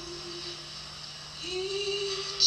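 A woman's voice singing long held notes without accompaniment. One note ends under a second in, and after a short pause another begins about a second and a half in, sliding slightly up onto its pitch.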